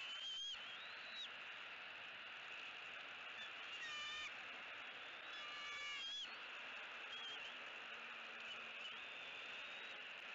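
Bald eagle nestlings peeping while being fed: a short high call about four seconds in and another about six seconds in, with a few fainter chirps, over a steady background hiss.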